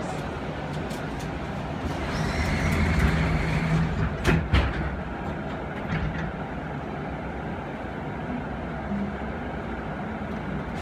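Steady hum inside an airport people-mover tram car standing at a station. A brief whir comes around two to three seconds in, then two sharp clunks at about four and a half seconds, typical of the sliding doors closing.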